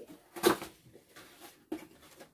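Cardboard food box being handled and its lid flipped open, with a sharp knock about half a second in and a smaller one near the end.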